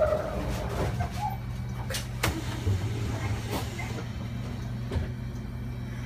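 Automatic-transmission city bus running, heard from inside the cabin near the driver: a steady low drone, with a few sharp clicks and rattles from the interior.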